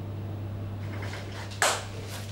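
A steady low hum, with one short sharp rush of noise about one and a half seconds in.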